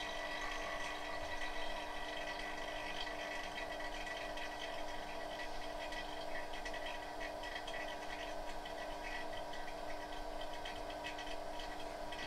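BM02 vacuum laminating machine running its laminating cycle with its blower fan switched off: a steady hum with several held tones.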